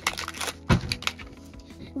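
Hard plastic Mini Brands capsule ball being twisted and pried apart by hand: a few small clicks and one sharper crack a little under a second in, over background music.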